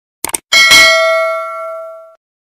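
Subscribe-button sound effect: a quick double mouse click about a quarter second in, then a single bright bell ding that rings out and slowly fades.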